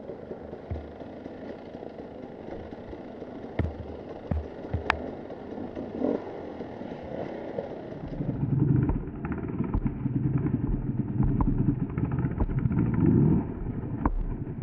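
A Husqvarna TE 300 two-stroke enduro motorcycle engine, heard from the rider's helmet. For the first eight seconds it runs quietly under a few sharp clicks and knocks. After a cut it comes back louder, rising and falling with the throttle as the bike rides along.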